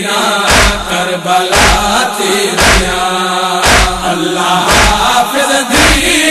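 Male voices chanting a Saraiki noha, a Shia lament, over a heavy beat that falls about once a second.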